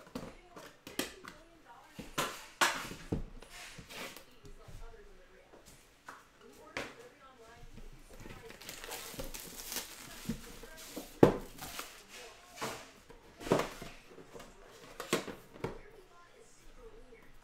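Sealed trading-card hobby boxes being handled and opened on a table: scattered taps and knocks of cardboard and box lids, a stretch of crinkling plastic shrink wrap around the middle, and sharper clacks as the box case is opened near the end.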